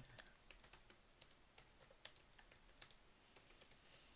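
Faint typing on a computer keyboard: an irregular run of key clicks, several a second.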